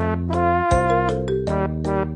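Background music: a light instrumental tune whose melody notes change a few times a second over held bass notes.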